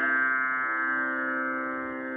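Tanpura drone sounding on its own between sung phrases: a steady cluster of sustained string tones that slowly fades, with another string's note entering a little under a second in.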